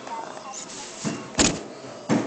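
Handling noise: a sharp knock about one and a half seconds in, with a weaker one just before it, over faint room sound.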